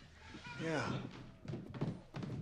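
Only speech: a voice saying "yeah" with a little dialogue around it, over quiet room tone.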